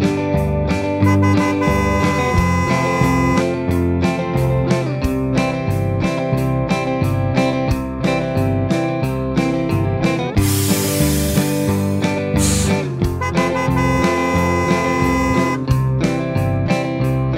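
Background music led by guitar, over a steady repeating bass beat. A brief hissing wash comes in about ten and a half seconds in.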